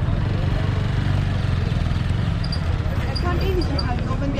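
Outdoor street ambience: a steady low rumble with the talk of passers-by, one voice a little clearer near the end.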